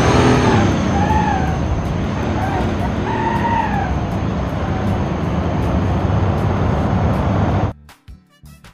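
A video-game semi-truck driving: a steady, loud engine and road rumble that cuts off suddenly near the end. It opens with a falling glide of several tones, and two short rising-and-falling calls come about one and three seconds in.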